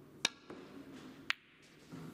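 Snooker shot: a sharp click of the cue striking the cue ball, then the ball rolling on the cloth and a second sharp click about a second later as ball strikes ball, with a fainter knock between them.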